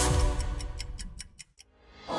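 Rapid clock-like ticking over a music track, both fading away and dropping to near silence about a second and a half in.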